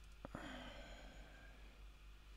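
Two quick computer keyboard clicks, then a soft sigh-like breath out that fades within a second, over a faint low room hum.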